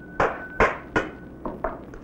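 A run of sharp knocks and clinks on hard objects, about five in two seconds, with a thin ringing tone lingering after the first few.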